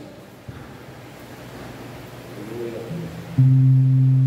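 Electric guitar played through an amplifier: a few quiet notes, then a loud, sustained low note about three and a half seconds in.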